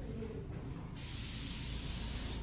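An aerosol spray can being sprayed: a steady hiss starts suddenly about a second in.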